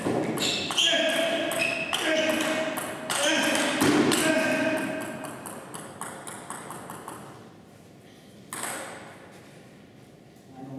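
Table tennis rally: the plastic ball clicks off bats and table in quick succession. The rally ends about halfway through, after which it goes much quieter.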